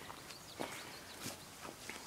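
A few soft footsteps on garden soil and weeds, faint against quiet outdoor background.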